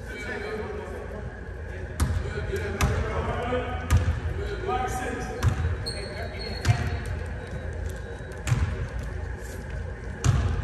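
A basketball bouncing on a hardwood gym floor, about six irregular bounces with deep thuds, ringing in a large gym, over players' chatter.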